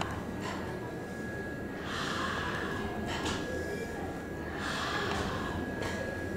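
Several soft, breathy puffs of air blown out through the mouth, the longest about two seconds in and another near the end, with a faint steady high whine behind them. This is the blowing and airflow practice of a cleft palate speech exercise.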